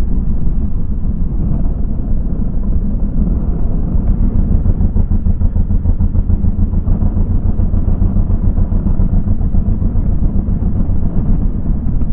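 Motorcycle ridden at road speed: a loud, steady low rumble of engine and wind buffeting on the on-board camera's microphone.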